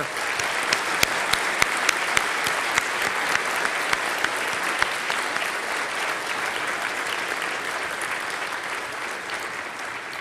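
Audience applauding: dense clapping that starts at once and slowly fades away.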